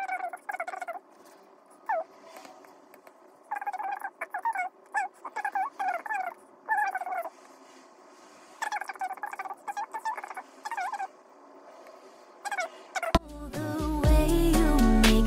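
Birds calling outside: runs of quick, repeated, falling notes, a second or two at a time with pauses between. Background music comes in near the end.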